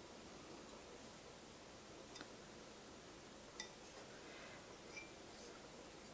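Near silence: room tone, with two faint clicks about two and three and a half seconds in.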